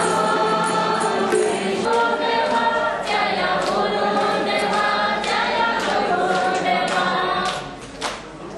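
A group of devotees singing a Vaishnava devotional chant in unison, with hand percussion struck along in a steady beat. The singing dies away shortly before the end.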